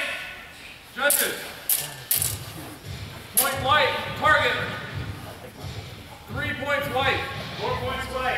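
Steel training longswords clashing: four sharp metallic strikes in the first three and a half seconds, with voices in between, in a large echoing hall.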